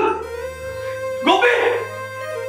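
A man crying out in anguish, one loud cry about a second in, over sustained background music.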